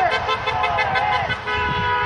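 A car horn honking one long steady note in the second half, over protesters shouting back the chant's response, with wavering voices in the first second.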